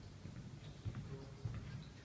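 Footsteps of a person walking, a few dull low thuds with faint clicks.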